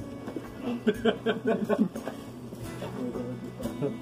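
Background music with guitar notes.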